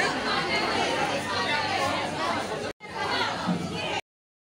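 People chattering and talking over each other in a busy room. The sound cuts out briefly for a moment near the end.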